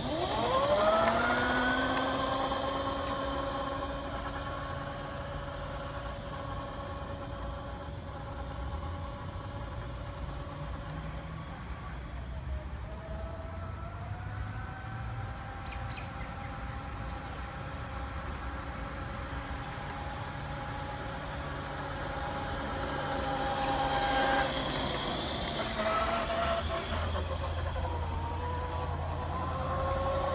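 Razor Dune Buggy's electric motor, a 24-volt 400-watt Currie motor overvolted to 36 volts, whining up in pitch as the buggy pulls away. It then holds a steady whine that dips and climbs again as the speed changes, and grows louder in the last few seconds as the buggy comes back.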